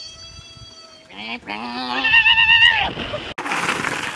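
A long, wavering, bleat-like cry starting about a second in, quavering for about two seconds after a fading held note, then cut off abruptly and followed by a short rush of noise.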